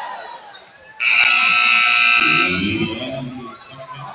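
Gym scoreboard buzzer sounding about a second in, a loud steady tone held for about a second and a half, as the game clock runs out to end the period of a basketball game.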